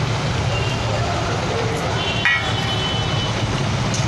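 Potatoes and parwal frying in oil in a kadai as chopped tomatoes are tipped in and stirred with a steel spatula, over a steady low rumble. There is a brief scrape about two seconds in.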